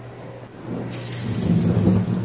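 A low rumble, with a hiss higher up, starts under a second in and grows louder.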